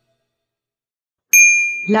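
After about a second of silence, a single bright bell-like ding sound effect strikes and rings on, fading slowly.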